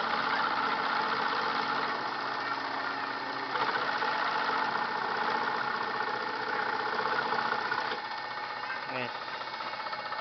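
Homemade scroll saw running, its motor humming and blade stroking up and down as it cuts wood. The sound grows louder about three and a half seconds in and eases off about eight seconds in.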